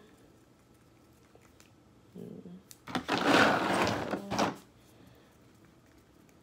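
Wooden popsicle stick stirring two-part epoxy in a small plastic shot glass, scraping quickly against the cup. It is faint at first, with a loud burst of fast scraping from about three to four and a half seconds in.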